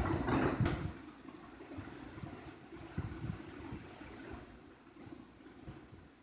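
Faint handling noise of a smartphone held in the hand, a little louder in the first second, then a low rustle with a few soft knocks about halfway through.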